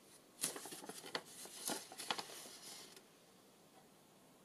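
A folded paper sheet being unfolded and handled: a run of crisp paper rustles and crinkles that stops about three seconds in.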